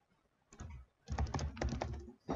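Computer keyboard typing: a faint key click about half a second in, then a quick run of keystrokes through the second half.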